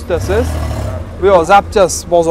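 Men talking, with a short rush of noise and low rumble under the voices about half a second in.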